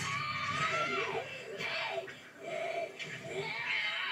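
An anime character's high, strained scream from the episode's soundtrack. One long wavering cry in the first second is followed by shorter broken cries.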